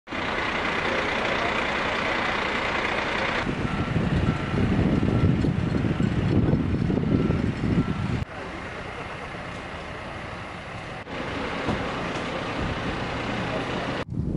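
Heavy diesel vehicle engine running, with a reversing alarm beeping at a steady interval for a few seconds near the middle. The sound changes abruptly twice.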